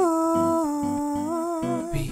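A male voice holds one long sung note, bending slightly near the end, over a steadily strummed acoustic guitar.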